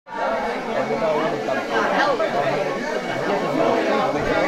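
Crowd chatter: many people talking at once, a steady babble of overlapping voices.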